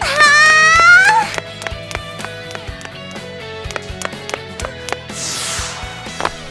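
Cartoon soundtrack music with a quick, light beat. It opens with a loud, high, drawn-out vocal cry lasting about a second. Near the end comes a falling whoosh.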